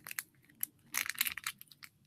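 Irregular crackling and rustling clicks, quiet, thickening into a dense cluster about a second in.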